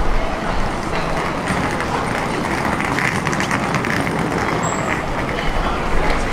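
Busy city street ambience: a steady rumble like road traffic, with footsteps and snatches of passers-by talking.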